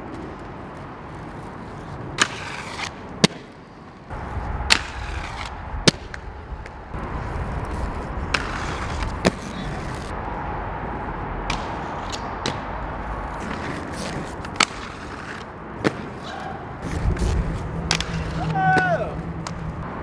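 Inline skate wheels rolling on concrete, with a string of sharp clacks from the skates striking concrete, over a steady rumble of overpass traffic. Brief voices near the end.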